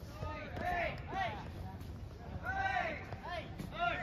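Voices calling out in a series of short shouts, each rising then falling in pitch, over a steady low background.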